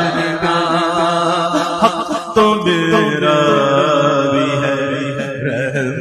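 Male voice singing a Persian naat without instruments, drawing out long melismatic notes with a wavering vibrato. A steady low drone runs beneath from a little over two seconds in.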